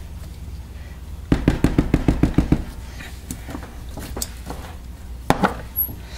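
A quick run of light taps, about ten in just over a second, then a few single knocks: a silicone spatula against a plastic tub of soap batter.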